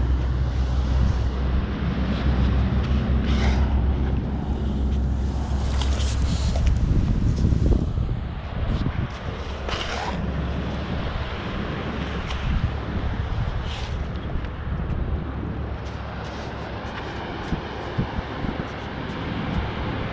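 Wind buffeting the microphone over surf and water, with a heavy low rumble for about the first eight seconds that then eases to a softer, steady rush, broken by a few brief sharper noises.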